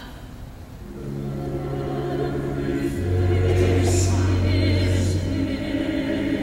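Church choir singing sustained chords under a conductor. The voices come in about a second in and swell louder, with a low note held beneath.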